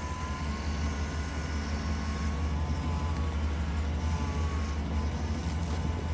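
A 1996 Chevy Silverado's engine idling with a steady low rumble while the front wheels are steered toward full lock. A faint whine from the power steering pump under load rises slightly over the first four to five seconds, then fades.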